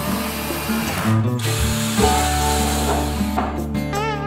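Cordless drill boring into a wooden board, running in two stretches with a short break just over a second in and stopping a little before the end, over background music.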